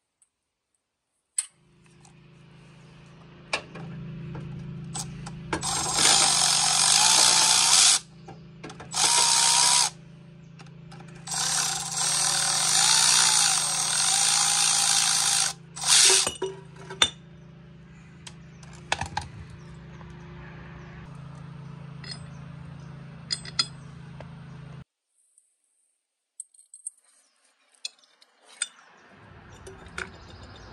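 Power drill driving bolts on an engine bracket, run in four bursts of one to four seconds, its motor pitch dipping under load. A steady low hum runs beneath and cuts off near the end.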